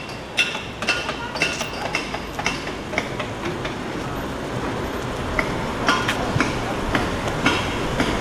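Road traffic passing along a town street: a steady rush of car tyres and engines that grows slowly louder toward the end as cars pass close by, with scattered sharp clicks on top.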